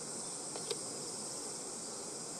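Steady high-pitched chorus of insects, with one sharp click about a third of the way in.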